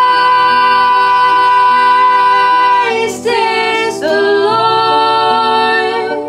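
Two women singing together, holding one long note, breaking off briefly about three seconds in, then holding another long note.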